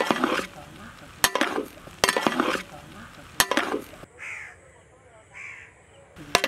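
Long metal spatula knocking and scraping against a large aluminium pot while fried rice is stirred and tossed: four strokes about a second apart, each a sharp knock followed by a scraping rustle of rice. Two short calls follow in the second half.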